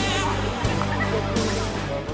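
Music playing over an outdoor PA system, with people's voices mixed in. It drops in level near the end.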